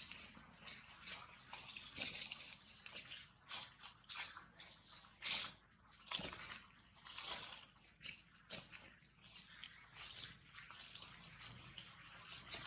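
Long-tailed macaques making wet mouth sounds: irregular smacking and licking noises, some sharp and some soft, coming in quick clusters.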